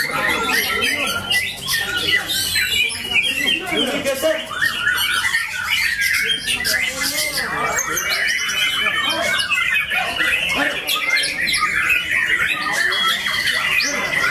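Caged white-rumped shamas (murai batu) singing, several birds at once. Fast chirps, whistles and trills overlap without a break.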